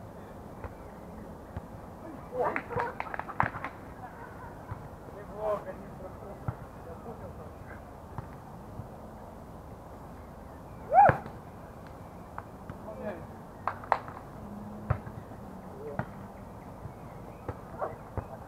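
Beach volleyball being played: sharp slaps of hands on the ball at irregular intervals, with short calls from the players. The loudest sound is a brief shout about eleven seconds in.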